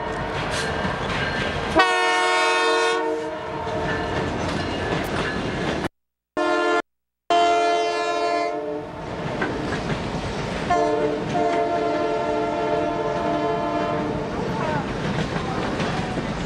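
Canadian Pacific Holiday Train passing at speed: a constant rumble and rattle of the cars on the rails, with three long blasts of the locomotive's air horn, the last one the longest. The sound cuts out completely twice for a moment around the middle.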